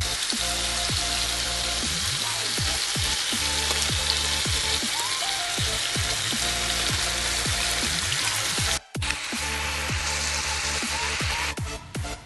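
Chicken breasts and minced garlic frying in oil in a pan, a steady sizzle that breaks off briefly about nine seconds in.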